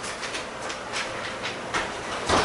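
A run of irregular light clicks and taps, about four a second, over steady room noise.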